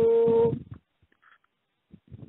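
A man's voice chanting a Sanskrit verse, holding one steady note that stops about half a second in, followed by a pause of near silence.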